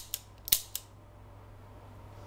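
Empty Enfield service revolver being dry-fired: three sharp metallic clicks of the action and hammer in the first second, the loudest about half a second in, then quiet.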